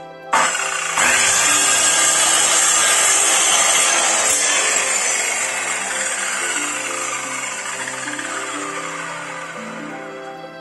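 Orion electric circular saw switched on and cutting through a wooden board. It starts suddenly just after the beginning, gets louder a moment later as the blade bites into the wood, then fades gradually over the second half.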